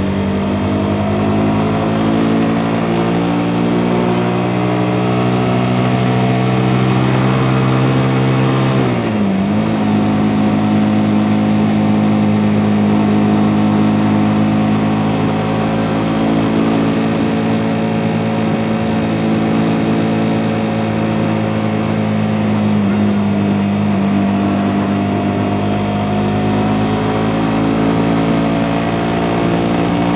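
Suzuki GSX-S150's single-cylinder engine running steadily at road speed under the rider. The engine note dips sharply about nine seconds in, then settles into a new steady note, with a smaller dip later on.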